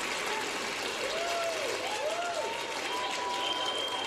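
Theatre audience applauding and laughing, with a few voices calling out.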